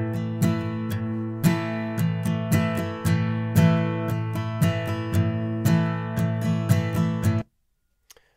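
Playback of a recorded Martin HD-28 acoustic guitar, strummed chords captured by a Neumann TLM 103 condenser microphone with no high-pass filter. The playback cuts off abruptly near the end.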